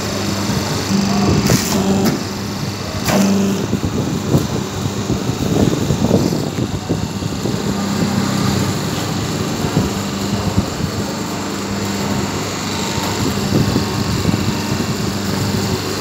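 Semi-automatic hydraulic double-die paper plate machine running: a steady motor hum with a low tone that swells and drops every few seconds, and a couple of sharp clicks in the first few seconds.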